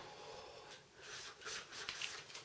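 Faint breathing of a man smoking a joint, with a soft hissing draw on the joint in the second half.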